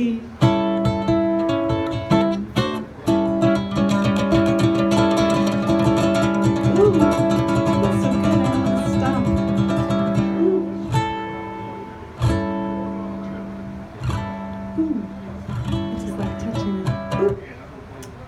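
An Epiphone Les Paul ukulele is strummed in a blues rhythm, playing the song's closing instrumental. About eleven seconds in, the strumming breaks into a few single chords that are left to ring and fade, the last one near the end.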